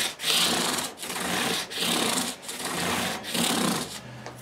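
600-grit cloth-backed sandpaper on a block rubbed in repeated strokes along the edge of a Jazz Bass fingerboard and its fret ends, dressing the edge. There are about five strokes, roughly one every 0.8 s.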